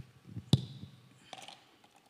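Handling noise from a handheld microphone: a few sharp clicks and taps, the loudest about half a second in, over quiet room tone.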